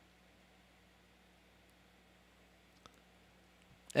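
Near silence: room tone with a faint steady low hum, and one soft click nearly three seconds in.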